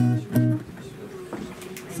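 Guitar chord strummed twice in quick succession near the start, then left ringing more quietly.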